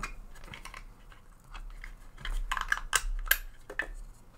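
Small clicks and taps of hard plastic parts being handled as a brass wire brush is fitted into a 3D-printed holder. The taps grow denser and louder in the second half, with the sharpest click a little past three seconds.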